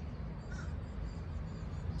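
Quiet, steady outdoor background rumble with a faint, short bird call about half a second in.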